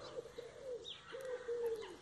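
A pigeon cooing quietly: a few low coo notes, the last one longer and slowly falling, with one short high chirp from a small bird just before a second in.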